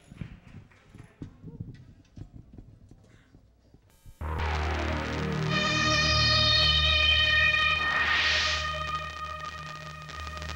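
Faint scattered knocks for the first four seconds, then an electronic logo jingle cuts in suddenly: a held chord over a low drone, with a whoosh sweeping up about eight seconds in.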